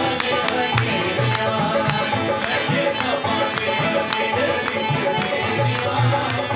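Live qawwali music: a harmonium and an acoustic guitar over steady hand-drum beats and rhythmic hand clapping, about three to four claps a second, with men singing into microphones.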